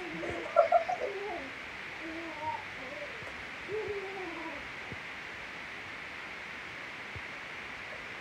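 A man's voice singing softly, a few short wavering, gliding phrases in the first half, then only a faint steady hiss; the drum and rattles have not yet come in.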